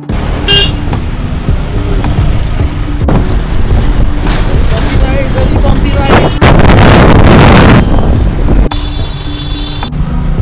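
Motorcycle riding through dense city traffic: road and traffic noise with vehicle horns honking just after the start and again near the end. A loud rush of wind on the microphone comes in about six seconds in and lasts over a second.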